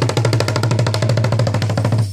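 Traditional Rwandan drums (ingoma) beaten with sticks in a fast, even roll of rapid strikes, which breaks back into separate beats just after the end.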